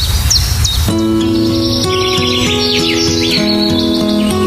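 Birds chirping over a steady rushing noise. About a second in, slow background music with held notes begins, and a quick run of bird chirps sounds over it.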